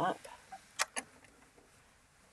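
Two sharp, short clicks from a Baby Lock Accomplish 2 sewing machine about a second in, as the needle is cycled down and up to bring the bobbin thread up from the bottom before free-motion quilting, with a few fainter ticks around them.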